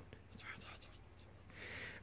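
Very faint whispered muttering under the breath, with a soft breathy hiss near the end.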